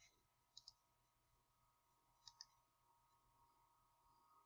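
Near silence with two faint pairs of computer mouse clicks, about half a second in and again just after two seconds.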